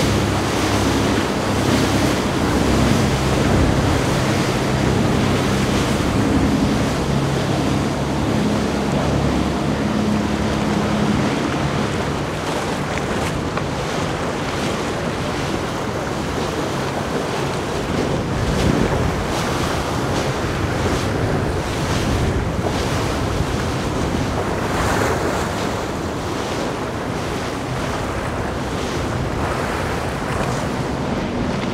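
A Fairline Targa 52 motor yacht's engines drone steadily as it runs past at speed, over the rush of its bow spray and wake, with wind buffeting the microphone. After about eleven seconds the engine drone fades, leaving mostly the rush of water and wind gusts.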